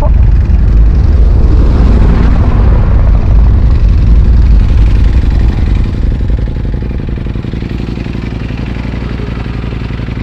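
Ducati Panigale V4 Speciale's V4 engine running as the bike rides along at speed, with wind rush on the microphone. It eases noticeably quieter about six seconds in.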